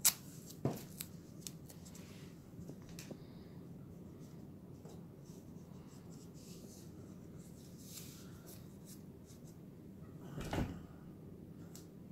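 Quiet handling sounds of masking tape being torn and pressed onto wooden dollhouse roof pieces: faint scattered clicks and rustles, with a soft bump about ten seconds in.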